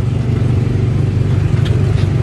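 Small gasoline engine of a Tomorrowland Speedway ride car running steadily with a deep, even hum, heard from the driver's seat.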